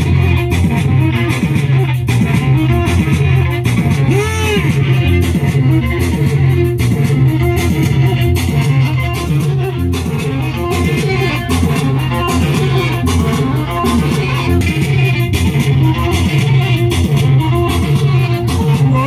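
Live Tigrigna band music played loud through PA speakers: an amplified plucked string lead playing a repeating riff over a steady bass line and beat.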